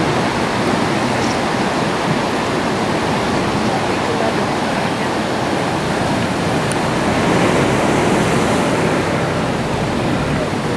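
Ocean surf washing and breaking against a rocky shoreline: a loud, steady rush of water that swells a little near the end.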